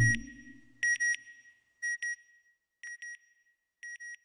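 Logo sound effect: a low whoosh dies away, then an electronic double beep sounds four times, about once a second, each pair fainter than the one before, like a sonar or satellite ping.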